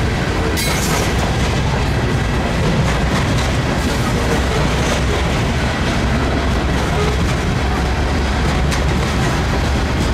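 Loaded coal hopper cars of a freight train rolling past close by: a steady, heavy rumble of wheels on rail with clatter and a few sharp clicks.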